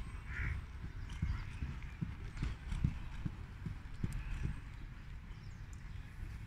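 Dull hoofbeats of a dressage horse in collected trot on a sand arena, under a low rumble.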